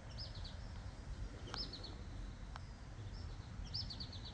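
A songbird repeating a short high phrase three times, an arched note followed by three or four quicker notes, over a steady low rumble of outdoor background noise.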